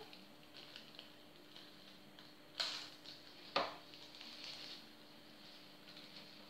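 Faint rustling and light clicks of a small plastic bag of foam beads being handled, with two louder crackles about a second apart near the middle.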